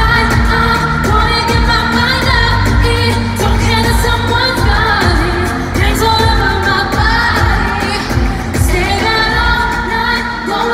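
Live pop song played over a concert sound system: women's voices singing over a steady electronic beat with heavy bass.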